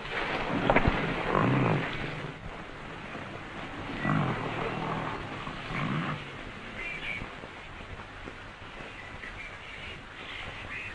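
Old sedan's engine revving in several surges as the car is driven off the road into brush, with a sharp knock about a second in. It dies down to a lower rumble over the last few seconds.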